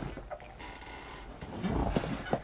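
A man's breathy hiss through the teeth and heavy breathing in reaction, with small rustling and knocking of movement, in a small room.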